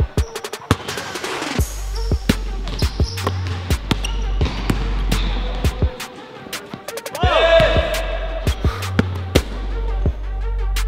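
A basketball dribbled on a hardwood court, a string of sharp bounces, over background music whose deep bass beat comes in about a second and a half in.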